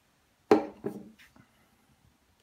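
A small plastic phone mount knocks down onto a tabletop: a sharp knock about half a second in, a second softer knock just after it, then a faint tap.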